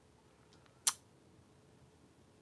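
Near silence with one short, sharp click a little under a second in.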